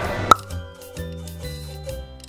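A single short pop sound effect, then light background music with a steady low bass note about twice a second.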